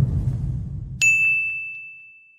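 Logo-reveal sound effect: a low rumble dies away, then about a second in a single bright metallic ding strikes and rings on one high tone, fading slowly.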